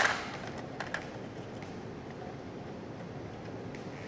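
Light plastic clicks and taps of small wrestling action figures being handled on a toy ring: a sharp burst at the very start, a couple of faint taps about a second in, then low steady hiss.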